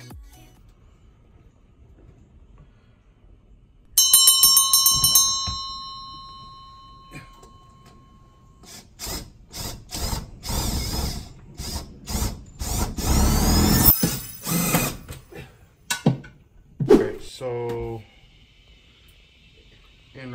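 A metal strut is struck once a few seconds in and rings out, then a cordless drill runs in several short bursts driving screws through a slotted steel strut, one burst rising in pitch.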